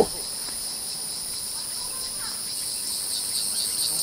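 Insects chirring steadily in several high-pitched bands, growing a little louder a little after halfway.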